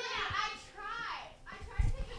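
A child's voice making high, gliding play sounds or exclamations without clear words, followed near the end by a dull thump.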